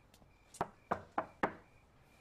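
Someone knocking on a panelled door, four knocks in quick succession.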